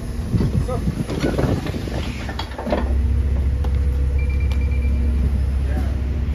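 Inside a New Routemaster diesel-electric hybrid bus: voices over the bus's background noise, then about three seconds in a steady low engine drone with a hum sets in and holds.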